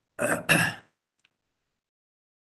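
A man clearing his throat: two short rasps in quick succession in the first second.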